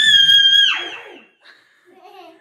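A toddler's high-pitched scream, held steady for under a second before it trails off and fades, followed near the end by a brief faint vocal sound.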